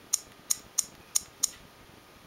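Five sharp, light clicks in quick succession, about three a second, within the first second and a half.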